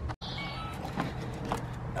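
Self-balancing hoverboard rolling over paving slabs: a low, steady hum with a couple of faint knocks.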